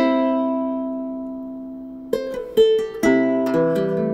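aNueNue harp ukulele played fingerstyle: a chord rings out and slowly fades for about two seconds, then plucked notes resume, with deeper notes joining near the end.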